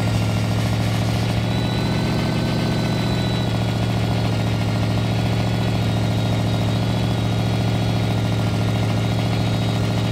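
Rock bouncer buggy's engine idling steadily.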